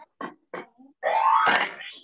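Cartoon sound effects: a few short blips, then about a second in a rising, sweeping pop-up effect for a character springing out, with a high glittery streak at its peak.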